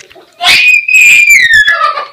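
A young child's loud, high-pitched shriek of excitement, about a second and a half long, sliding down in pitch toward the end.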